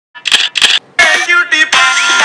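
Two quick camera-shutter clicks of a phone taking a selfie, then music starts about a second in.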